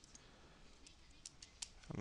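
A few faint, spaced clicks of wireless computer keyboard keys being pressed in a paste attempt that isn't working, over near silence.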